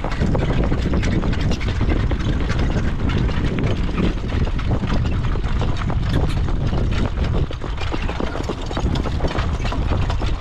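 Steady rumble of wind on the microphone of a harness horse's jog cart moving along a dirt track, with the horse's hoofbeats and the cart's rattle heard as many short sharp clicks.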